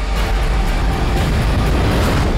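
Loud film-trailer soundtrack: music over a deep, steady rumble.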